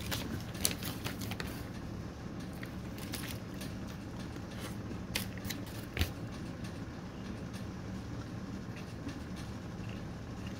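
Eating a fruit-and-nut dark chocolate bar: scattered small crunching clicks, with a sharper one about six seconds in, over a low steady hum.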